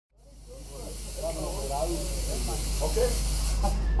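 Stage fog jet hissing loudly over a low steady drone and voices in the hall; the hiss stops shortly before four seconds in.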